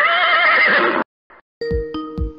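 A loud, wavering, neigh-like call about a second long that cuts off suddenly. A short musical jingle with beats starts near the end.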